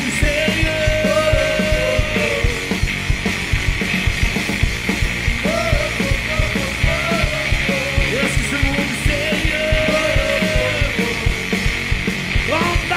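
Live rock band playing: electric guitars over a drum kit, in a passage with no sung words.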